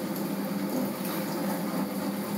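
Small top-loading spin dryer running steadily with a low hum, water being spun out of the laundry.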